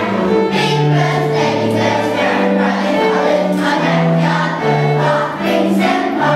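Children's choir singing a song with a string ensemble accompanying, violin and low strings holding notes beneath the voices. The notes change about every half second to a second.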